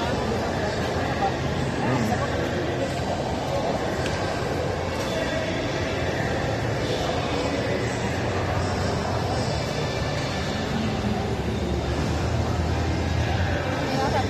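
Shopping-mall ambience: steady indistinct crowd chatter with background music playing in the hall.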